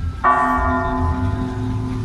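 A large bell struck once about a quarter second in, ringing on with a slowly pulsing low hum as it decays.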